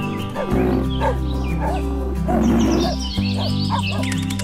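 Background music with a dog barking sound effect mixed in over it.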